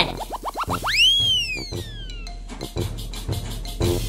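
Cartoon sound effects over upbeat children's background music: a quick run of about five springy rising boings, then a whistle that swoops up and slides slowly back down about a second in.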